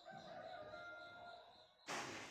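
A faint, drawn-out animal call lasting about a second and a half, followed near the end by a sudden short burst of noise.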